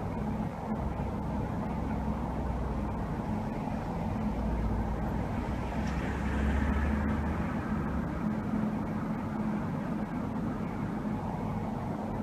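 Steady low hum with an even background hiss, swelling slightly about six seconds in.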